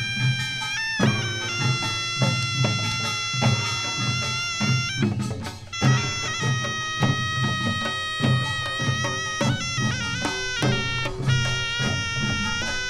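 Korean folk band music: a reed shawm holds long, piercing notes that step from pitch to pitch over steady drum beats, with a brief break about halfway through.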